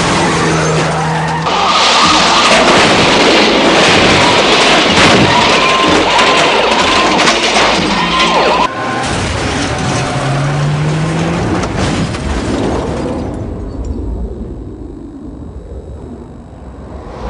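Film car-crash sound effects: dense crashing and scraping with tyre squeals over about the first half, an abrupt cut, then a vehicle engine rising in pitch, fading to a low rumble near the end.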